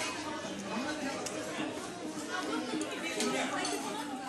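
Indistinct chatter of diners, several voices talking over one another without clear words.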